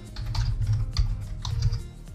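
Typing on a computer keyboard: a quick run of keystrokes as a short name is entered.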